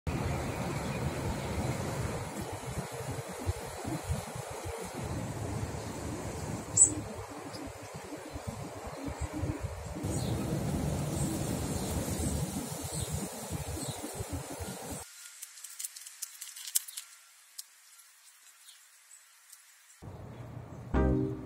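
Outdoor background noise: a steady low rumble with a single sharp click about a third of the way in. The rumble cuts off abruptly about three-quarters of the way through, leaving only faint ticks.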